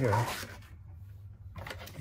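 Faint rustling and a few light clicks of insulated electrical wires being handled and moved around a converter/charger unit, after a short spoken word.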